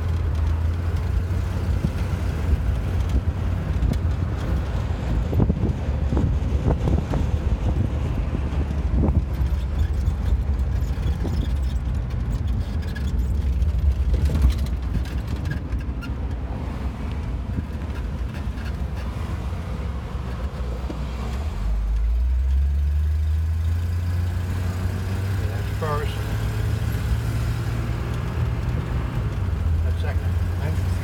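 1963 Ford Falcon's 144 cubic-inch inline six running as the car drives slowly, heard from inside the car with road noise. It eases off and goes quieter for a few seconds past the middle, then from about 22 seconds in the engine note climbs steadily as the car pulls away and picks up speed.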